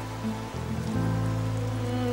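Background music: sustained low, held chords of a drama underscore, which change about half a second to a second in, over a faint even hiss.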